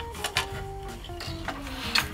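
Background music with a few sharp wooden clicks and knocks from a Saori floor loom being worked. Two come close together early on, and the loudest comes just before the end.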